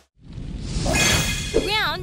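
A swelling whoosh transition sound effect that builds over about a second and a half, followed near the end by a short warbling voice-like sound that bends up and down in pitch.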